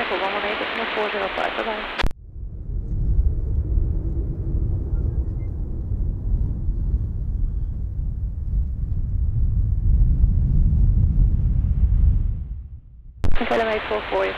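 Jet airliner passing, its engines a deep rumble that builds over several seconds, is loudest late on and then falls away.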